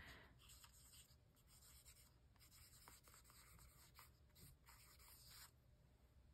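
Pencil writing a word by hand on a painted art-journal page: faint scratching in short strokes that stop shortly before the end.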